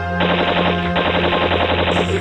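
Machine-gun fire: two rapid bursts of about ten shots a second with a short break between them, over background music with a steady low drone.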